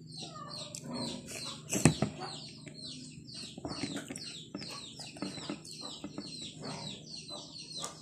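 Birds chirping in rapid, repeated chirps that slide downward in pitch, several a second. A sharp click about two seconds in.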